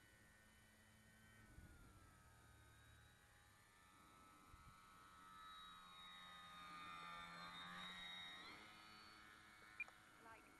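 Faint whine of the Durafly Tundra RC plane's electric motor and propeller in flight, swelling in level from about five seconds in and dropping in pitch as the plane passes at about eight and a half seconds, then fading. A brief click comes just before the end.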